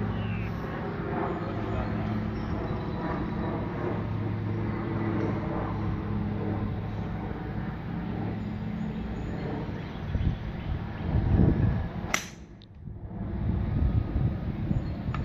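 A 3-wood striking a golf ball once with a sharp crack about twelve seconds in, over a steady low hum.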